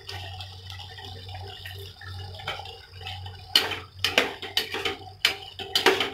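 Paneer cubes sliding from a steel strainer into wet tomato gravy in a kadai, a soft liquid sound over a low steady hum. About halfway through, a steel ladle starts stirring, clinking and knocking against the pan several times.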